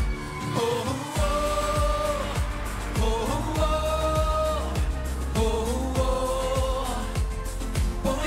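A live pop band playing a romantic ballad-style song, with a steady kick-drum beat of about two strokes a second under long held melody notes that slide into each new pitch.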